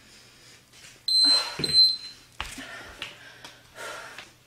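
An electronic interval timer beeps twice, short and high, about a second in, over hard exercise breathing. A thud follows soon after, typical of a foot or hand landing on the floor mat.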